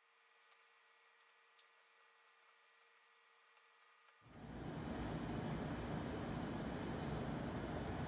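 Faint low hum with a steady tone, then about four seconds in a loud, steady rushing noise with a deep rumble starts abruptly and carries on, with a few light clicks over it.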